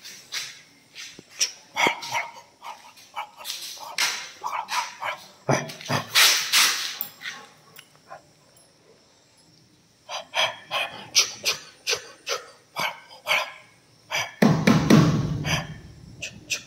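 An 8-month-old Rottweiler barking in repeated short series, with a pause of about two seconds in the middle and a low rumble near the end.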